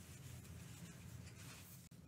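Near silence, with the faint rustle of a crochet hook and yarn being worked into double crochet stitches.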